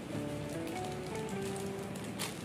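Plastic packaging of an oxygen face mask crinkling as it is handled and torn open, over soft background music with a simple melody.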